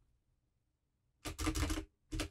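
Computer keyboard typing: about a second of quiet, then a quick run of keystrokes clustered together in the second half.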